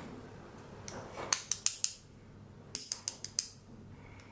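Light metallic clicks and clinks of a folding knife's small parts being handled as it is taken apart. They come in two quick clusters, one about a second in and another a second and a half later.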